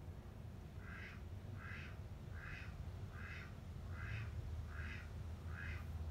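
A bird calling: seven short, evenly spaced calls, a little more than one a second, over a low steady rumble.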